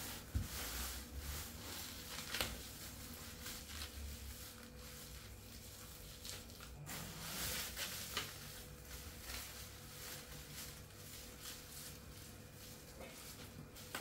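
Faint rustling and crinkling of plastic cling film as it is pressed around a wrapped log and handled, with a few small clicks.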